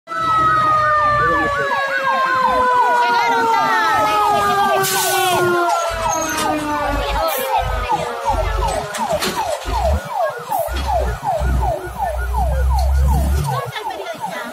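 Emergency vehicle siren sounding a fast yelp, about four rising sweeps a second, together with a long steady siren tone that slowly falls in pitch over the first several seconds. A low rumble runs under it in the second half.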